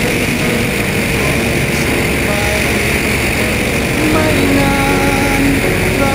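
Steady drone of a light seaplane's propeller engine mixed with wind rush, heard from on board in flight.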